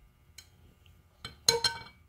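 Machined steel parts clinking as they are handled: a faint click, then two sharper metallic clinks about a second and a half in, the second ringing briefly.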